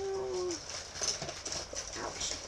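A short, steady, high-pitched vocal note lasting about half a second and dipping slightly at its end. It is followed by light rustling and small clicks as packages of craft supplies are rummaged through.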